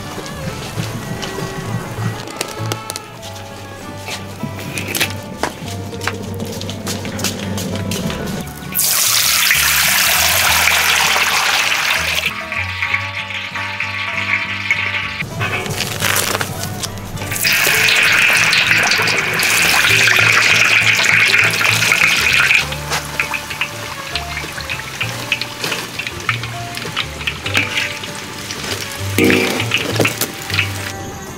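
Background music, with deep-frying oil sizzling loudly twice, each time for a few seconds, as dumplings go into the hot oil of a wok.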